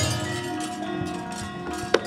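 Javanese gamelan playing, its bronze metallophones and gongs ringing in many sustained tones, with one sharp knock near the end.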